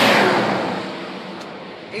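A vehicle going past on the road, its noise loudest at the start and fading away over about two seconds.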